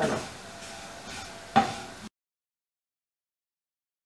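Wooden spatula stirring and scraping a dry coconut-and-spice mixture in a nonstick pan, faint, with one sharp knock about one and a half seconds in. The sound then cuts off to dead silence about halfway through.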